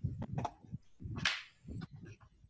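Faint microphone noise over a video-call line: a few sharp clicks and one short breathy hiss about a second in.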